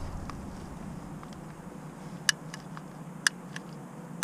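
A long-necked butane utility lighter being clicked three times, about a second apart, as it is tried in the wind, over a faint low background hum.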